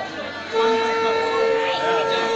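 Conch shell (shankha) blown in a long, steady note. It stops at the start and takes up again about half a second in, as if the player paused for breath.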